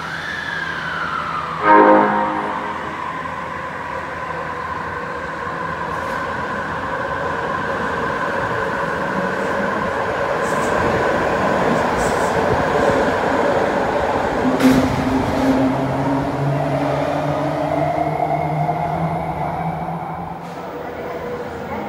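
Osaka Metro 80 series linear-motor subway train departing. A short horn toot about two seconds in is the loudest moment. The train then pulls out and gathers speed with a steady motor whine over running noise, and the tones shift as the last cars pass near the end.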